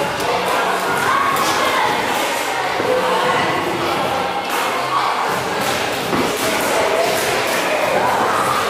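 Scattered thuds of gloved punches and kicks and feet moving on the ring canvas during light-contact kickboxing sparring, over a steady background hubbub.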